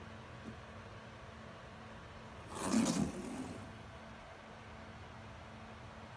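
A brief scraping rustle a little over two seconds in, lasting about a second: a PAR meter's sensor and its cable being dragged across a cardboard floor.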